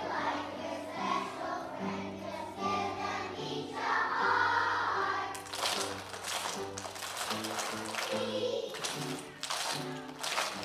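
Choir of young children singing with an instrumental accompaniment of stepped low notes. About halfway through, a run of sharp percussive hits joins in.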